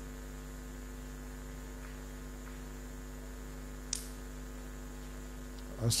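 Steady electrical mains hum from the microphone and sound-system chain, with a short faint tick about four seconds in.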